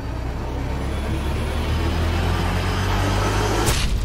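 Title-sequence sound effect: a low rumbling drone under a swell of noise that grows steadily louder, broken by a sharp crash near the end.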